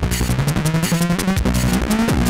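Live electronic music with a fast, even beat and a synth bass line that climbs in pitch step by step.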